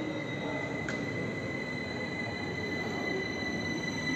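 Steady vehicle running noise with a thin, high, steady whine over it and a faint click about a second in.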